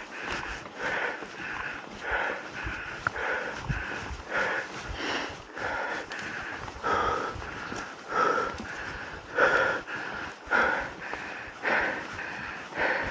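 A mountain biker breathing hard and rhythmically close to the microphone while pedaling, each breath a noisy swell every half second to a second.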